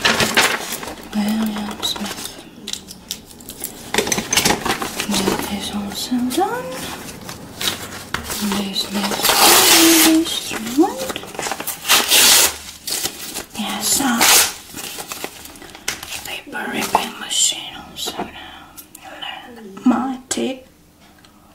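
Pencil scratching and paper shuffling, then a sheet of paper torn by hand with a long, loud rip about halfway through, followed by further tearing and rustling.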